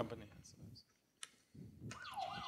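Quiet room tone with a single sharp click a little over a second in.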